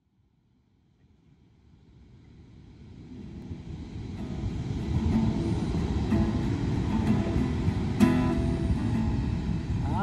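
Fading in from near silence, a low rushing of surf and wind grows over the first few seconds. From about halfway an acoustic guitar intro is played over it, with one sharp struck chord about eight seconds in.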